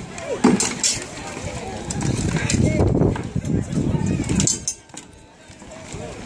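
Sparring weapons knocking against a shield, with a couple of sharp knocks in the first second, mixed with voices of fighters and onlookers.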